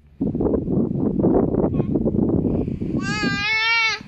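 A rough, unpitched noise for about three seconds, then an infant lets out one long, wavering, high cry in the last second.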